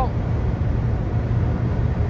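Steady in-cabin drone of a Nissan Sunny at motorway speed, about 145 km/h with the engine near 3,800 rpm: a deep rumble of engine, tyres and wind.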